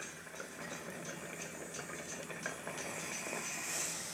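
Water bubbling and gurgling through glass dab rigs as they are inhaled through, with a brighter rush of air near the end.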